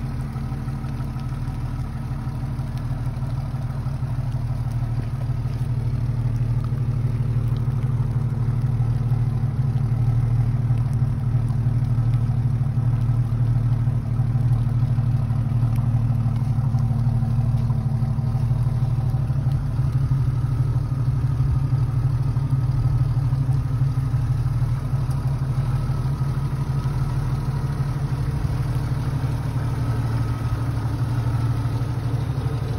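Jeep Wrangler Laredo's 4.0-litre inline-six idling steadily, a low even engine note that grows a little louder about six seconds in.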